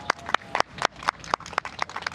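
Sparse applause from a few people clapping: sharp separate claps, the loudest keeping a steady beat of about four a second, with weaker ones in between.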